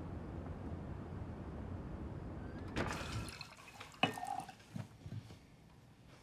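Low, steady street ambience, then, from about halfway through, wine being poured from a bottle into glasses, with several light clinks of glass.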